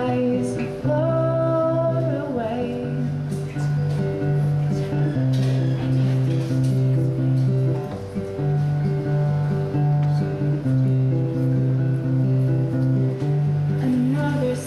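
Acoustic guitar playing a steady progression of chords through an instrumental break in a song, with a woman's voice holding a sung note briefly near the start.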